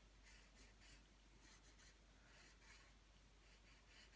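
Faint scratching of a graphite pencil sketching on paper: a string of short, irregular strokes.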